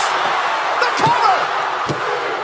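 Two heavy thuds of wrestlers' bodies hitting the ring mat, about a second in and near the end, over arena crowd noise.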